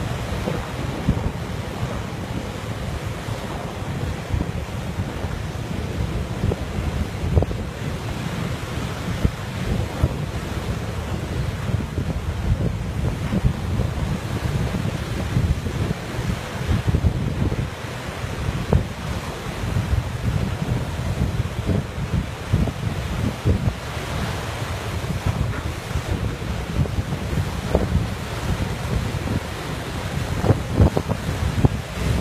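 Strong wind buffeting the microphone: an uneven, gusty low rumble with a rushing hiss above it.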